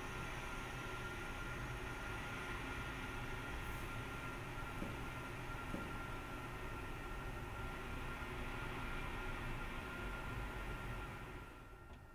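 Chapman Hydroscope telescopic camera crane running almost silently: only a faint, steady hiss with a thin high hum, fading away near the end.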